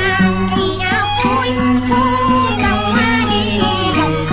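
Cantonese opera music: a melody of sliding, wavering pitched lines over the ensemble, with a steady low hum running under the old recording.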